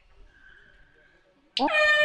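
Near silence with faint background sound for about a second and a half. Then a man's voice starts near the end with a drawn-out, rising "hai".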